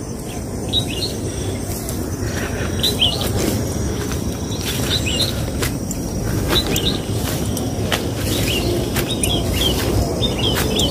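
Small birds chirping, short high calls repeating every second or so, over a steady low background rush.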